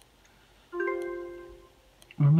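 A single electronic bell-like chime about two-thirds of a second in, fading away over about a second. It is the online auction's alert sounding as a new bid comes in.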